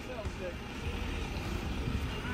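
Motorhome's Fiat Ducato 2.3-litre diesel engine running low and steady while the van sits stuck in mud, not moving.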